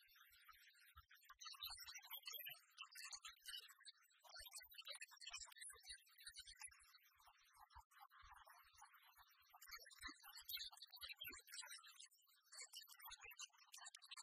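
Near silence, with faint scattered sound.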